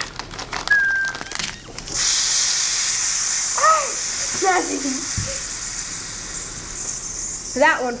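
Baking soda and vinegar reacting in a sealed plastic bag: a steady high hiss of fizzing carbon dioxide that starts about two seconds in and runs until near the end. The bag does not burst. Children's brief laughs and squeals are heard over it.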